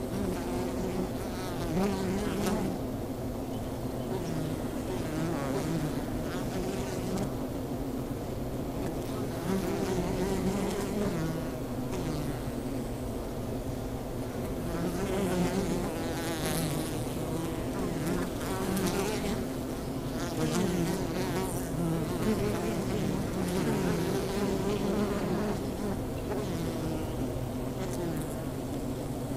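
Honeybees buzzing around their wooden hives: a continuous, steady hum from the swarm, with single bees rising and falling in pitch as they fly close past.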